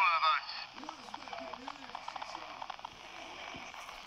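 Talking Woody doll's pressable voice box speaking the end of its line "This town ain't big enough for the two of us" through its small built-in speaker, thin with no low end, finishing about half a second in. After that only much quieter faint sounds and small clicks remain.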